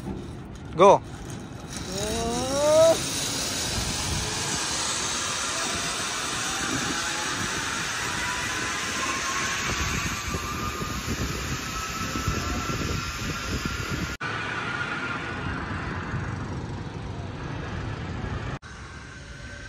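Zip-line trolley pulleys running down the steel cable: a steady rushing whir with a thin whine that slowly rises in pitch. A couple of short shouts come near the start, the second rising in pitch like a whoop.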